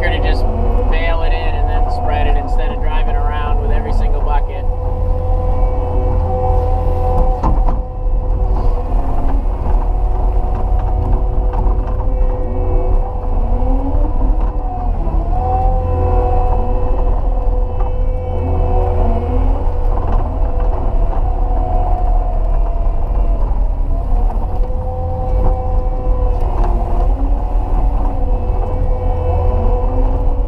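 Caterpillar 289D compact track loader heard from inside the cab: the diesel engine runs steadily under load with a hydraulic whine whose pitch rises and falls as the bucket pushes fill dirt. There is a single knock about eight seconds in.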